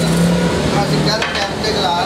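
A drinking glass set down on a tabletop with a brief knock about a second in, over a man talking.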